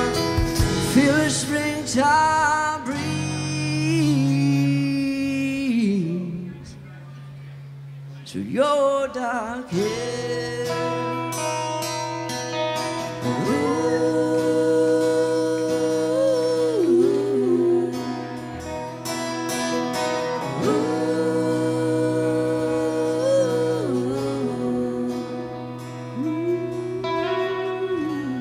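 Indie rock band playing live: long held sung notes over guitar. The sound drops to a quieter stretch about six seconds in, then builds back up.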